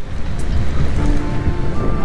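Wind rushing over the camera microphone, a steady noisy roar, under background music.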